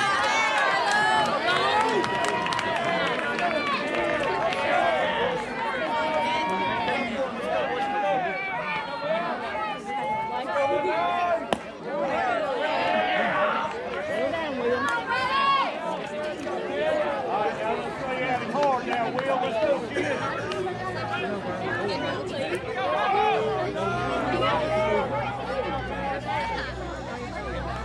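Many voices of spectators and players talking and calling out at once, overlapping in a steady babble, with one sharp knock about halfway through.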